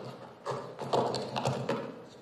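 Police radio transmission from an officer in a foot pursuit: a run of rhythmic thumps about two or three a second, like running footfalls, heard through the radio.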